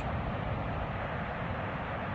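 Steady rushing noise of floodwater pouring over the Oroville Dam emergency spillway, an even roar with no distinct events.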